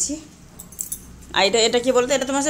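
Cotton cloth rustling as a blouse piece is unfolded, with a light jingle of bangles on the wrist of the hand handling it, in a short pause between a woman's words.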